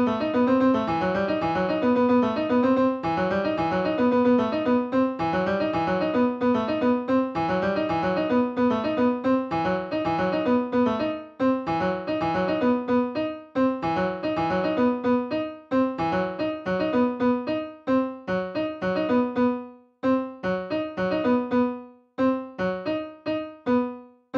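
Computer-generated piano playing a repeating one-bar phrase of rapid sixteenth notes in a low register. The phrase repeats roughly every two seconds and loses a note with each repeat, so that from about halfway the line thins out into more and more gaps and rests.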